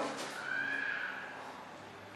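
Whiteboard marker squeaking faintly as it writes on the board, one thin high squeak lasting under a second.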